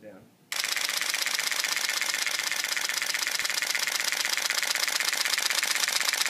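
Nikon F5 film SLR firing in continuous high-speed mode, its shutter, mirror and built-in film-advance motor clattering in a rapid, even burst at about eight frames a second. The burst starts about half a second in and holds steady with the release held down.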